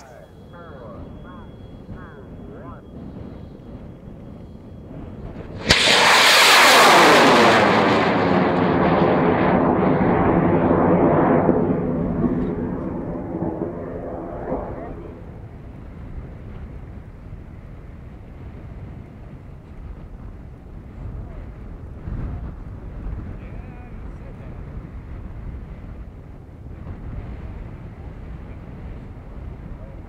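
High-power rocket lifting off on an M1939 solid-fuel motor: a sudden loud rush of motor noise about six seconds in that sweeps down in pitch as the rocket climbs away, fading out some nine seconds later into wind noise.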